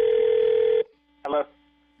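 A steady telephone tone sounds for about a second and cuts off, then a brief snatch of a voice and a faint low hum come over the phone line.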